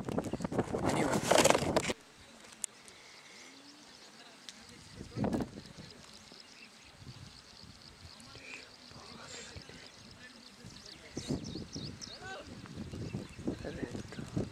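Outdoor sound with a loud rush of noise for the first two seconds, then faint distant voices and a single dull knock about five seconds in. People's voices grow louder near the end.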